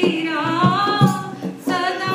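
A woman singing a devotional bhajan into a microphone, holding long, bending notes, with a short break between phrases near the end. A steady drum beat runs underneath.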